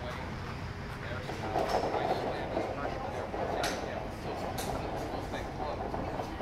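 Steady wind rumble on the microphone, with two sharp clicks about a second apart in the second half.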